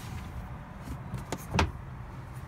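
Steady low rumble with two sharp knocks about a second and a half in, the second louder: handling noise as the phone is moved back from the window screen and a hand touches the window frame.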